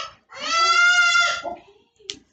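A young child's long, high-pitched wailing cry, one drawn-out call of about a second.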